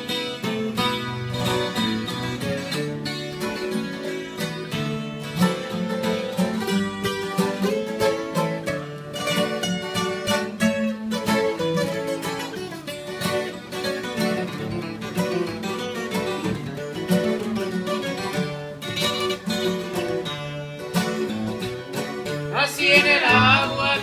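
Sierreño guitar trio playing an instrumental intro: a requinto picking a fast lead line over a twelve-string guitar and an acoustic guitar strumming the accompaniment. A voice calls out near the end.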